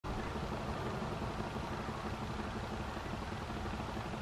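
Steady outdoor background noise with a low hum that does not change.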